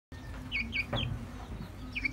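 Chicken calls: three quick, high, falling chirps close together around the middle, and one more near the end.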